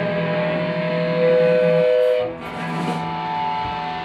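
Live punk band's amplified electric guitars ringing in long held tones, louder about a second in, then dropping away just past two seconds.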